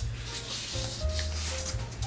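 Fingers rubbing and sliding over a sheet of acrylic-painted printing paper as a crease is pressed flat, a soft, dry brushing sound.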